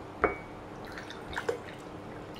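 Water being poured from a plastic bottle into a drinking glass, faint, with a short sharp click about a quarter second in.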